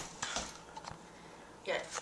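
A few light clicks and knocks in the first second, then a woman's voice starting to speak near the end.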